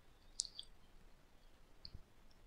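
Faint computer mouse clicks: one clear click about half a second in, then a couple of softer clicks, over quiet room tone.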